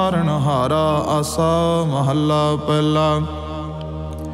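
A man's voice chanting Sikh scripture (Gurbani recitation) in a melodic chant over a steady low drone. The pitch glides and wavers for the first two seconds, then settles into a long held note.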